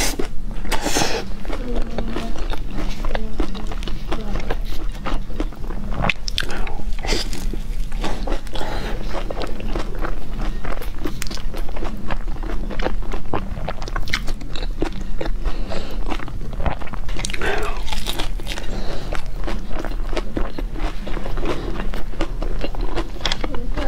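Close-miked biting and chewing of crisp-crusted pizza, with a constant run of wet, crunchy mouth clicks and crackles.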